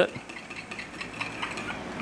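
Metal spoon stirring heated liquid soft-bait plastic in a glass measuring cup: quiet scraping with a few light clicks.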